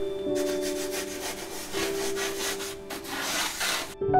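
Soft background music holding sustained notes, over a run of rubbing strokes against a surface that thicken into a steadier rub near the end; the sound breaks off abruptly at the end.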